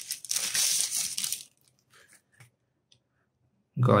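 Thin white protective sleeve crinkling and rustling as a pair of sunglasses is pulled out of it, for about the first second and a half, followed by a few faint ticks as the glasses are handled.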